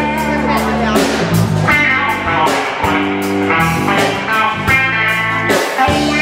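Blues band playing live with two electric guitars, an electric bass and a Tama drum kit, with steady drum hits under sustained guitar and bass notes and no singing.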